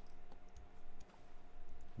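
A few light clicks from a computer mouse and keyboard being worked, over a faint steady hum.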